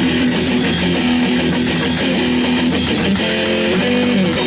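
Live band playing loud guitar-driven music: electric guitars strumming over bass and drums, with no singing.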